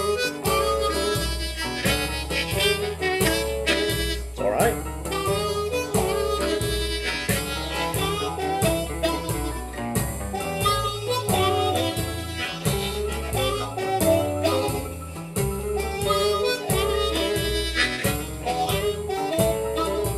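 Blues harp (diatonic harmonica) played with cupped hands, working a blues lick over a slow backing track with a repeating bass line.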